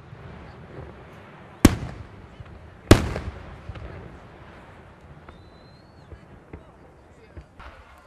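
Aerial firework shells bursting overhead: two loud bangs about a second and a quarter apart, each followed by a rolling echo, over a steady low rumble and crackle with a few fainter pops later on.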